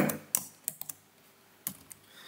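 Computer keyboard being typed on: a handful of separate keystroke clicks, one about a third of a second in, a quick cluster just before the one-second mark, and two more near the end.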